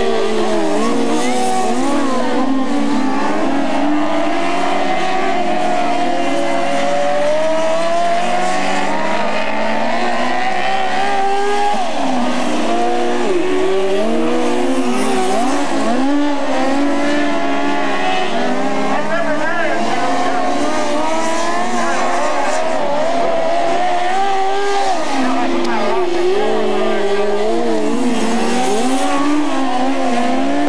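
Several open-wheel dirt-track race car engines running together, their pitches rising and falling as the cars go into and out of the turns.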